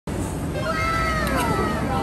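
A single high, drawn-out call with a clear pitch that holds level, then slides down in pitch near the end.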